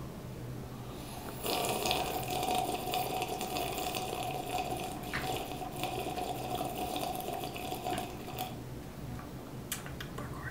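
A long, continuous sip of a drink from a paper cup. It starts about a second and a half in and stops near the end.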